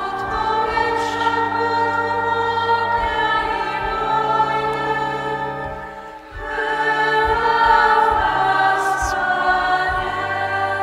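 Choir of religious sisters singing a hymn in long, held phrases, with a short breath-break about six seconds in.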